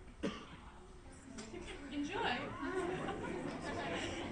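Indistinct chatter of several voices, with a single sharp click just after the start.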